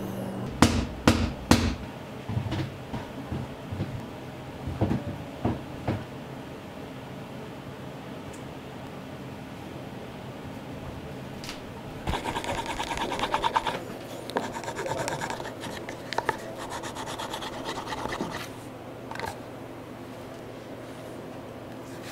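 Rapid back-and-forth rubbing on a leather holster, loudest as a brisk run of strokes for about two seconds past the middle and returning more lightly after that. A few sharp knocks of tools and handling are heard near the start.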